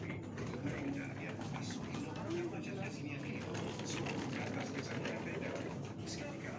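Supermarket background noise: indistinct voices of other people over a steady low hum.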